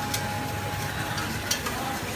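Burger patty frying on a flat griddle, a steady sizzle with a few sharp clicks, the loudest about one and a half seconds in.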